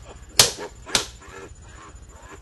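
Two sharp cracks about half a second apart, each with a brief ringing tail, closing a run of such hits; after them only low background noise.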